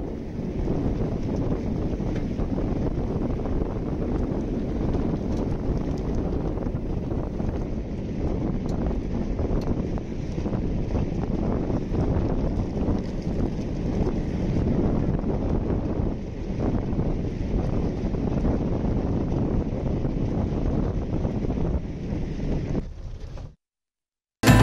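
A 4x4 tourist vehicle driving fast on a dirt track: steady engine and road noise under heavy wind buffeting the microphone. It cuts off suddenly near the end.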